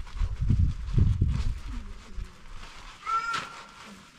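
A single short, high animal call about three seconds in. It follows low rumbling noise in the first second and a half.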